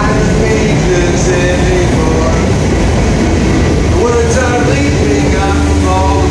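A train passing close by, a loud, steady rumble and rattle. A strummed ukulele and a man's singing voice are heard over it, the voice clearer from about four seconds in.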